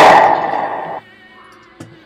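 A single loud pistol shot, its blast trailing off for about a second before cutting off abruptly, over background music. A faint click near the end.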